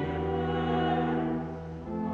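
A small church choir singing sustained chords. The sound eases briefly near the end between phrases, then the voices come back in.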